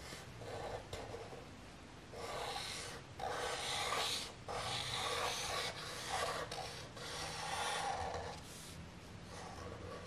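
Felt-tip marker drawing on paper: a series of rubbing strokes, each about half a second to a second long, as flame outlines are drawn.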